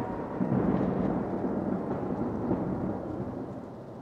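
Rumbling, thunder-and-rain-like noise closing an electronic dance track, with no notes left, slowly fading out.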